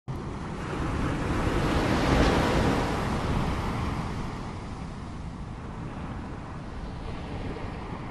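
Ocean surf: a wave breaking, swelling to its loudest about two seconds in, then easing into a steady wash of churning white water.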